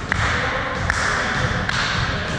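Three sharp taps about a second apart over a steady rushing noise, in a large gym hall.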